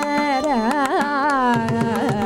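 Carnatic vocal singing with violin accompaniment and mridangam. The melody sways through quick ornamented pitch turns midway, over a steady run of sharp mridangam strokes, with deeper bass strokes of the drum coming in near the end.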